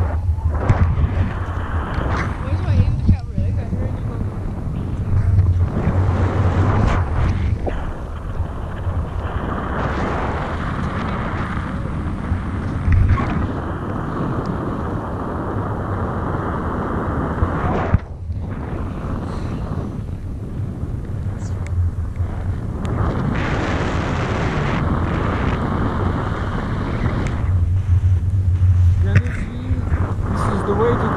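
Wind buffeting the action camera's microphone in paraglider flight: a loud rushing rumble that swells and dips in gusts.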